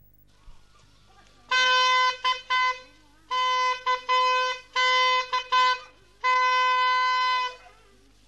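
A postman's horn blown on one steady note in a signalling pattern: several long blasts, two of them followed by two short toots. It is the rural postman's signal that he has reached the village.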